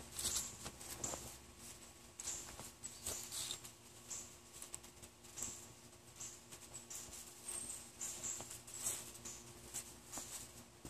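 Faint, scattered rustles and light clicks of a person moving about and handling a large, thin plastic Fresnel lens sheet.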